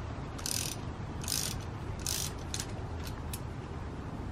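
Hand ratchet wrench clicking as it is worked on the end of a coilover strut: three short runs of ratcheting about a second apart, then a few quick single clicks near the end.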